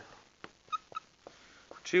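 Dry-erase marker on a whiteboard: a few faint ticks and two short, faint high squeaks about three-quarters of a second and a second in as the marker writes.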